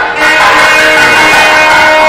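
Temple bells ringing continuously, a dense wash of overlapping metallic tones held steady after a brief dip at the start.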